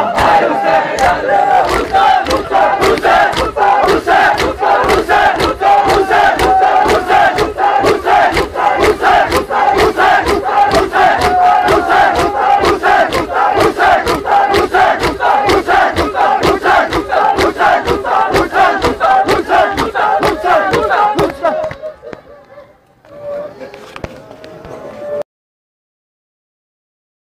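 Large group of men chanting a noha in unison over rapid, steady hand chest-beating (matam), several sharp slaps a second. Near the end the beating stops, leaving fainter voices, and the sound then cuts off suddenly.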